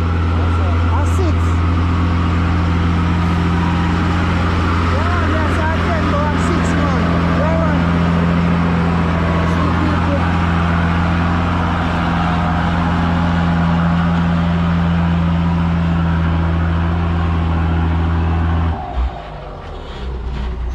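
Diesel dump truck engine running at a steady pitch as the truck drives slowly past, the drone cutting off suddenly near the end.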